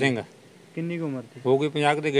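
A man's voice in short, broken fragments of speech: two brief phrases with pauses between them.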